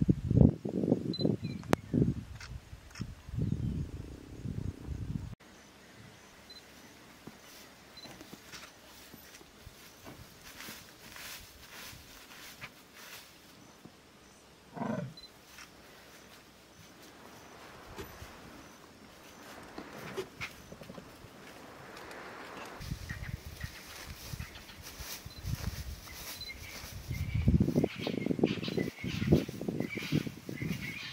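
Male leopard calling in a series of low, rough grunts, loudest in the first few seconds and again building over the last several seconds, with a quieter stretch between.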